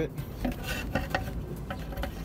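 Toyota Tacoma engine's valve cover being lifted off the cylinder head, with several light metallic clinks and knocks as it shifts against the head and bolt studs.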